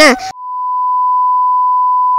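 A steady, pure beep tone, dubbed in to bleep out speech. It cuts in about a third of a second in, as the speaking voice breaks off abruptly, and holds at one pitch.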